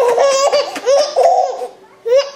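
Baby laughing in a run of short, high-pitched bursts that trail off near the end.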